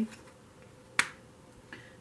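A single sharp click about a second in, from the reader's hand laying a tarot card down onto the spread on the table.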